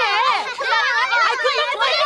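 Several high-pitched voices shouting at once: a woman yelling over children's voices.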